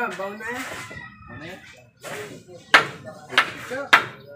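Hammer strikes on the wooden roof frame: three sharp blows in the second half, after a short pitched call near the start.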